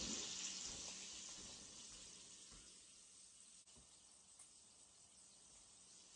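Bacon frying in bacon grease in a cast-iron skillet, a faint steady sizzle. A louder hiss at the start fades away over the first three seconds or so.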